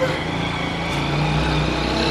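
A motor vehicle's engine running nearby, growing gradually louder.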